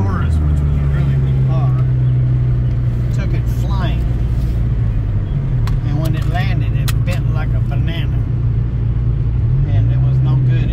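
Chevrolet Malibu engine and road noise heard inside the cabin while driving: a steady low hum whose pitch rises briefly near the end.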